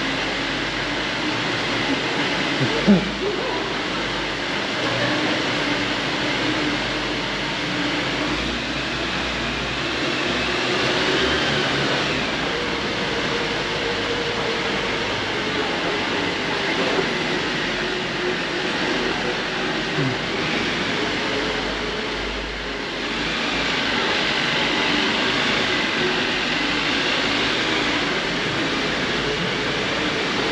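Jeep Rubicon driving slowly through a mine tunnel, its engine running steadily with a faint wavering whine, and a short knock about three seconds in.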